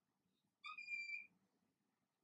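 Dry-erase marker squeaking on a whiteboard: one short, steady high-pitched squeal of under a second, about halfway through.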